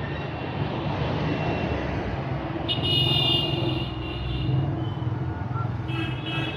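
Steady roadside traffic noise with engines running. A vehicle horn sounds for about a second around three seconds in.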